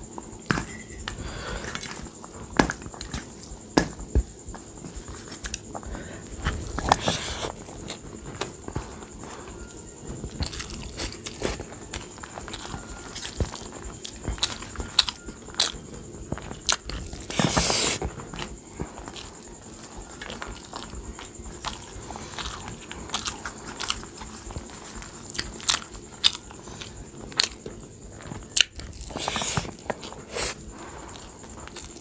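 Close-up eating sounds of rice mixed with kadhi, eaten by hand: wet chewing and lip smacking, with many short clicks and fingers squishing the rice against a steel plate. Two longer, louder noisy bursts come about a quarter of the way in and again just past the middle.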